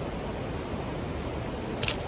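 Steady outdoor background noise with a single camera shutter click near the end.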